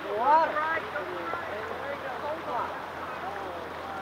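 Faint, indistinct voices talking over a steady background hiss.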